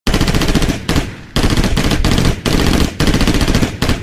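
Sampled automatic gunfire: rapid machine-gun fire in about four bursts of roughly a second each, with short gaps between.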